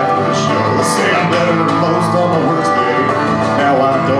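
Acoustic guitar strummed in a steady country-folk rhythm, played live solo, with about three strokes a second.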